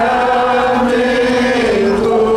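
A slow Catholic hymn sung in unison, with long held notes.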